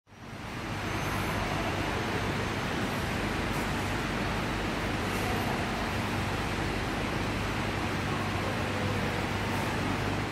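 Steady rushing background noise of a railway station waiting hall with a low hum underneath, fading in over the first second.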